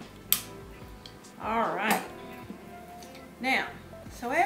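A single sharp snip of hand cutters biting through the wire stem of an artificial flower, about a third of a second in, over background music with a voice in it.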